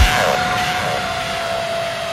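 Psytrance track in a breakdown: the pounding kick drum stops right at the start, leaving a single held synth tone over a wash of white-noise sweep.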